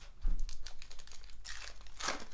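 A low thump, then the wrapper of a Topps Heritage High Number baseball card pack crinkling and tearing as it is ripped open by hand, with a louder rip about one and a half seconds in.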